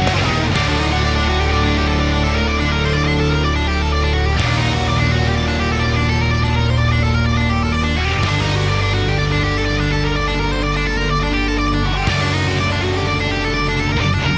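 Heavy metal band playing: distorted electric guitars through a Peavey 5150 tube amp head, with bass guitar and drums, the riff changing about every four seconds. It is one clip of a tube-swap comparison, the amp fitted with JJ and then Shuguang tubes partway through, and the tone stays essentially the same.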